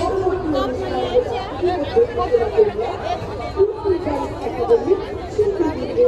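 Crowd chatter at a busy fair stall: several voices talking over one another, none clear enough to pick out, with a steady low rumble underneath.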